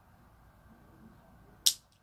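A single short, sharp metallic click about one and a half seconds in, from the clasp of a cheap metal hoop earring being forced open; the thin metal is bending rather than unlocking.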